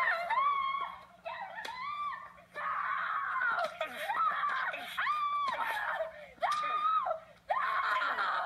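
A woman screaming and wailing in anguish: a string of about seven high, drawn-out cries, each around half a second long, rising and falling in pitch, with sobbing breaths between them.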